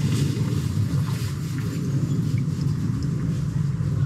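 Wastewater running through a just-unblocked manhole channel, a steady low rumble.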